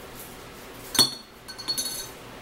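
Glassware clinking: one sharp clink about a second in with a short high ring, then a few lighter clinks near the end.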